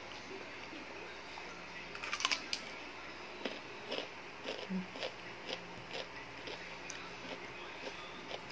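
Crisp crunching as a piece of raw lalap vegetable is bitten about two seconds in, followed by chewing with short crunches roughly twice a second.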